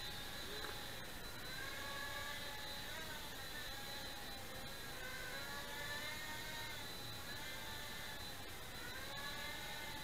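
Blade Nano QX quadcopter's four tiny motors and propellers whining in flight. The pitch rises and falls every second or two as the throttle and direction change, over a steady thin high tone.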